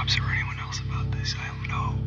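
Hushed, whispery speech over a steady low droning music score.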